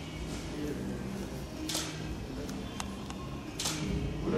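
Low background chatter in a room, with two short hissy bursts and a few faint clicks between them.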